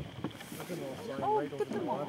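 Several voices talking over one another, with faint clicking from a bat detector underneath, most noticeable in the first half-second.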